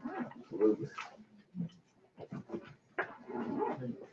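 Pages of a hymnal rustling and the book being handled as it is leafed through, with a few short, faint vocal sounds.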